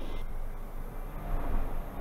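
Pilatus PC-12NG's Pratt & Whitney PT6A turboprop engine giving a steady low drone as power comes up at the start of the takeoff roll.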